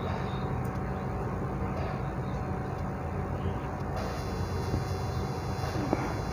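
Steady background noise with a low hum and no distinct events, picked up by the microphone while nobody speaks.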